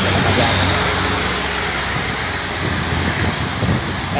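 Heavy traffic on a steep uphill road: a coach passing close with its diesel engine working on the climb, with steady tyre and road noise, and a dump truck following up the hill.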